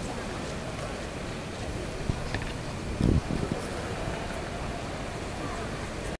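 Swimming pool deck ambience: a steady bed of background noise with spectators' and officials' voices, and a brief low thump about three seconds in.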